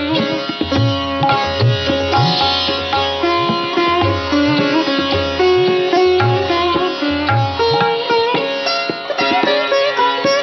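Sitar playing a Masitkhani gat, the slow-tempo Hindustani instrumental composition form, in quick successions of plucked and ornamented notes. Low drum strokes recur about once a second underneath.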